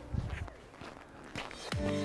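A few footsteps in snow, in the first half second.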